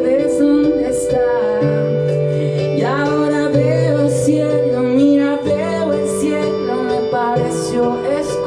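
A young man singing live into a microphone over held chords on an electric keyboard, the bass notes changing every second or two.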